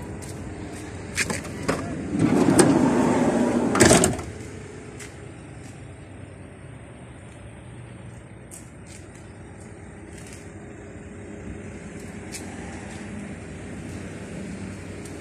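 Sliding side door of a Toyota Hiace van being opened: a couple of latch clicks, then the door rolls back along its track for about two seconds and stops with a knock. After that only a quieter steady outdoor background with a few light clicks.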